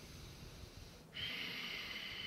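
A person breathing forcefully in and out through the nose: a softer breath, then about a second in a louder, longer one.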